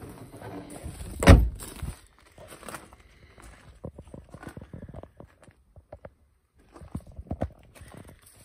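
A Vauxhall Insignia's tailgate slammed shut with one loud thunk about a second in, followed by footsteps on gravel.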